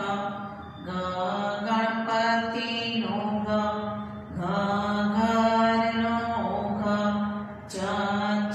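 A woman's voice slowly chanting Gujarati letters aloud, one drawn-out syllable at a time, each held a second or two in a steady sing-song pitch.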